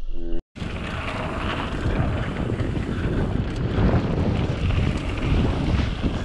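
Wind buffeting the microphone of a mountain bike rider's camera, with low rumble, as the bike descends a dirt trail. It starts after a short dropout about half a second in.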